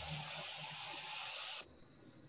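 Steady hiss of background noise from an open microphone on a video call, with a faint thin high tone in it. It cuts off suddenly about one and a half seconds in.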